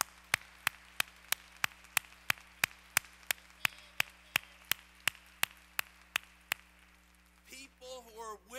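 A pair of hands clapping close to the microphone in a steady beat of about three claps a second, stopping about six and a half seconds in. Under it is a faint wash of applause from the congregation.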